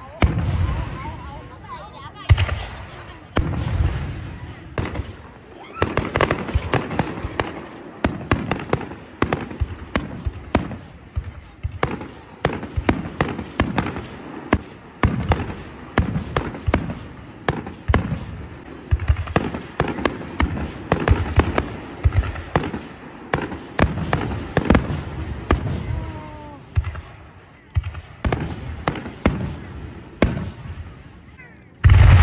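Japanese aerial firework shells launching and bursting close by: heavy booms and sharp bangs, at first a few seconds apart, then from about six seconds in a dense, rapid barrage of reports and crackle.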